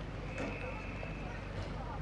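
Open-air background of a grass field: a steady low wind rumble with faint, indistinct distant voices. A thin, steady high tone sounds for about a second, starting about half a second in.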